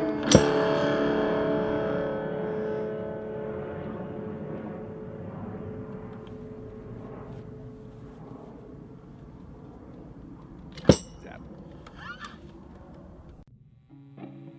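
The last guitar chord of a live song rings out after a sharp final hit and fades away over several seconds. Near the end comes a single loud click, then a few small clicks, before the sound cuts off.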